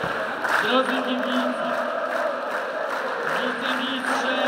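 Arena crowd of volleyball fans chanting in unison with clapping: a rhythmic chant of many voices that breaks off and starts again about three seconds in.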